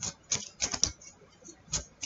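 A deck of tarot cards being shuffled by hand: a run of quick, irregular clicks and flicks as the cards slap together.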